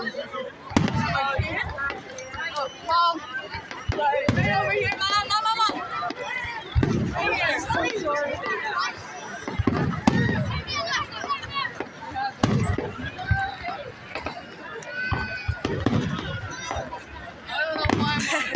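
Fireworks display: aerial shells bursting with a boom every few seconds, under steady nearby crowd chatter.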